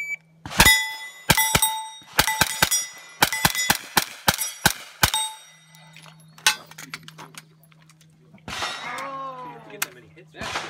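A fast string of about fifteen to sixteen shots from a suppressed rifle over the first five seconds, with steel targets ringing after hits. After that it goes quieter, with a steady low hum and a brief voice near the end.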